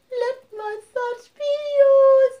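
A high solo voice singing with no accompaniment: three short notes with brief gaps between them, then a long held note starting about one and a half seconds in.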